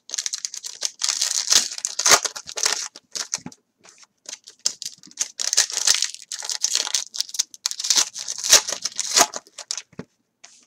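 A trading-card pack torn open and its wrapper crinkled by hand, in two long spells of crackling with a short pause about three and a half seconds in.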